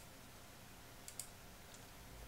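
Near silence with two faint computer mouse clicks about a second in, the board display being advanced.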